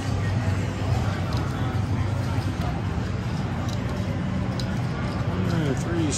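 Steady casino-floor din of background chatter, with a few light clicks from cards and chips being handled at the table.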